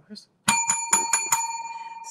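A small bell rung several times in quick succession, then left to ring out and fade slowly.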